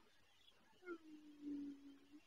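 A faint hummed 'mmm' from a woman: one steady low note lasting about a second, starting about a second in.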